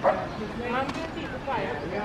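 A small dog barking excitedly: three short, high yaps about 0.8 s apart, the first the loudest.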